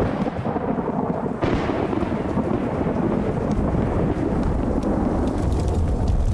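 Thunderstorm: a dense, steady rush of rain with deep rolling thunder that grows heavier toward the end.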